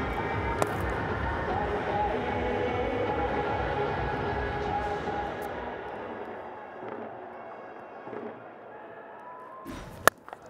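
Cricket stadium ambience: crowd noise mixed with music, with the sharp crack of a bat striking the ball about half a second in and again at the very end. The crowd and music fade quieter after about six seconds.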